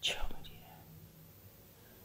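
A short breathy whisper from an elderly woman thinking aloud, then near quiet with only a faint low hum.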